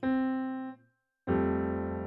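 Piano chords played on a keyboard. A chord is struck and fades out just before a second in; after a brief gap of silence a second chord is struck and held.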